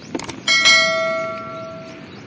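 A bell struck twice in quick succession about half a second in, after a few light knocks, its ring fading away over about a second and a half.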